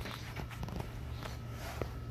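A steady low hum with a few light clicks and knocks scattered through it.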